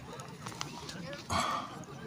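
Voices of a group of people talking outdoors, with a few faint clicks and a short louder burst of sound about a second and a half in.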